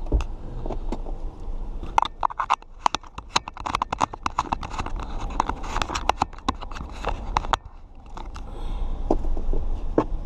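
Fingers handling the dash camera right at its microphone: a dense run of clicks, taps and scrapes, busiest in the middle and thinning out near the end, over a low steady rumble.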